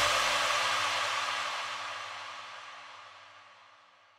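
The last sound of an electronic background music track: a noisy, hissing tail with no beat that fades out steadily over about three and a half seconds.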